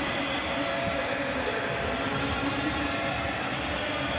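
Steady stadium background noise: an even wash of venue ambience with no distinct events.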